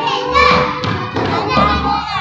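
A group of young children's voices together, with low thuds underneath.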